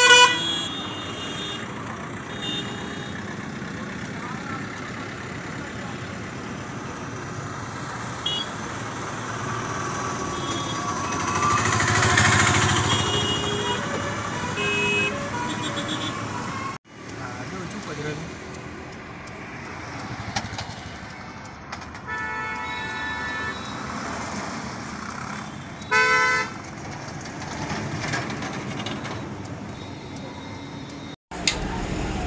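Road traffic passing close by, with a vehicle going past about twelve seconds in and car horns honking, the loudest a short blast late on.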